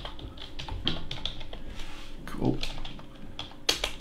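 Computer keyboard being typed on to enter a short word: a quick run of key clicks, with two sharper clicks near the end.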